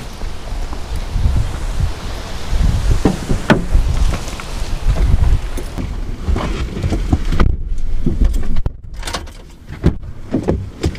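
Wind buffeting the microphone with handling noise, a couple of sharp clicks about three seconds in, then knocks and rustling as people climb into a Ford F-150 pickup's cab through its open doors, with a sharp knock near the end.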